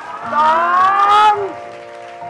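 A drawn-out voice, the word "นะ" (na) held long with a rising pitch, over soft background music with held chords and a light beat.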